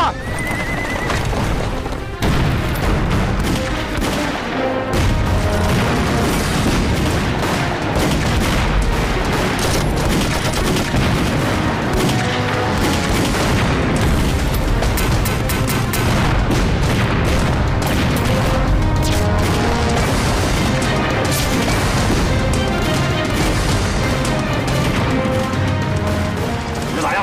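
War-film soundtrack: dramatic music under battle sound effects, with repeated bangs of shots and explosions throughout. A horse whinnies briefly near the start.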